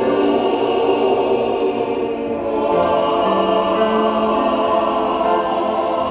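Mixed church choir singing the closing line of a hymn in Chinese, on long held notes that shift to a new chord about three seconds in.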